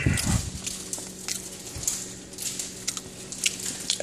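Mouth sounds of someone chewing a bite of a chocolate-coated marshmallow snack cake: scattered soft clicks and smacks, after a low thump at the start.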